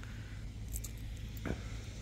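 Quiet outdoor background with a steady low rumble, a few faint light clinks a little under a second in, and a brief voice sound near the end.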